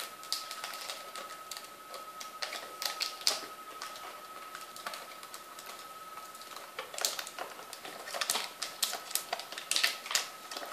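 Hands handling a black-taped cardboard shoe box: scattered clicks, taps and rustles of fingers and cardboard, busiest in the last three seconds. A faint steady high tone runs underneath.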